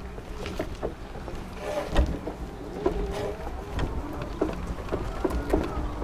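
Low rumble of wind and movement on a body-worn camera's microphone, with scattered faint knocks, the strongest about two seconds in.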